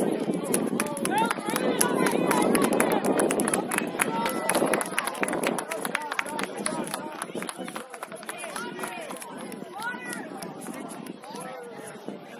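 Many voices of players and sideline spectators talking and calling out over one another outdoors, with scattered sharp clicks. The voices are loudest in the first few seconds and die down toward the end.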